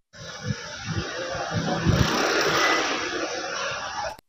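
Outdoor background noise, a steady rush like passing traffic. It starts abruptly, grows louder toward the middle and eases off near the end.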